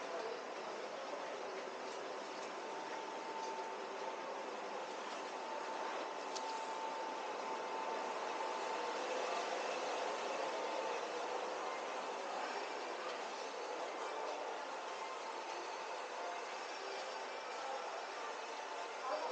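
Indoor shopping-mall ambience: a steady, even hiss of air handling, with a faint steady tone through the middle stretch.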